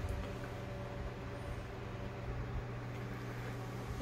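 Steady low electric hum with a faint even hiss, the sound of a fan or air-handling motor running in a small room.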